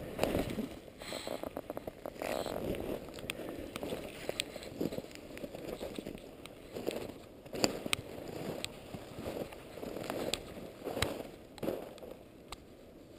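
Footsteps in shallow snow, one crunch a little under every second, with a few sharp clicks in between, heard muffled through a camera's waterproof housing.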